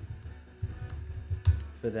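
Typing on a computer keyboard: a handful of separate keystroke clicks, the sharpest about one and a half seconds in, over soft background guitar music. A man's voice comes in with a word at the very end.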